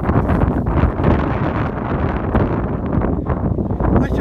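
Wind buffeting the phone's microphone in a steady low rumble.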